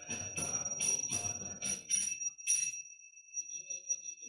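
Rapid bright metal strikes, about three a second, each ringing with two steady high tones, like a small bell being rung. The striking stops about two and a half seconds in and the ring hangs on and fades.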